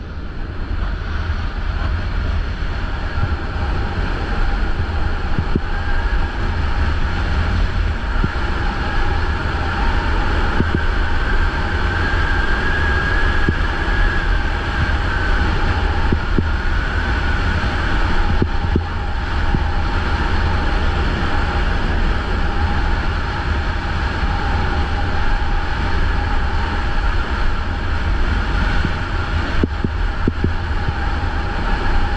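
Steady wind rush on a moving camera's microphone, with the continuous scrape and hiss of a snowboard sliding down a snow slope.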